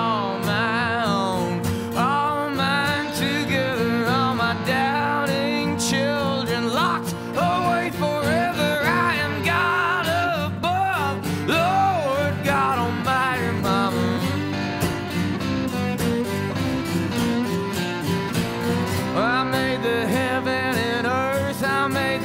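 Live acoustic country-style music: steel-string acoustic guitar accompaniment with a wavering melody line over it, strongest in the first half and again near the end.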